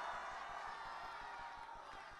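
Large rally crowd in a stadium applauding and cheering, the noise slowly dying down.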